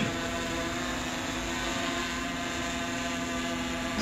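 A steady engine drone holding one pitch, like a motor idling, with no change across the four seconds.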